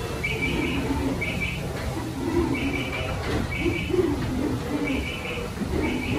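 Birds chirping and cooing: short chirps repeat roughly once a second over lower warbling coo-like calls, against a steady low rumble of turning wooden mill machinery.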